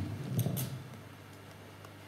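Quiet hall ambience with a steady low hum, broken about half a second in by a brief low murmur and two sharp clicks.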